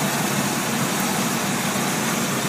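A steady low mechanical hum with an even hiss over it, holding unchanged, like an idling engine or running machinery.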